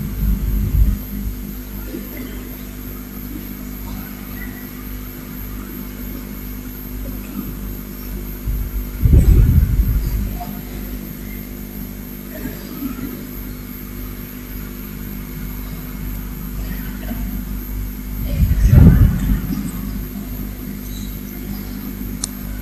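A steady low hum with hiss in a pause between words, broken three times, about nine seconds apart, by short low-pitched sounds close to the microphone.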